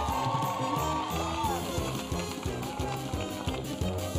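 Upbeat background music with a steady beat, a bass line and a melody on top.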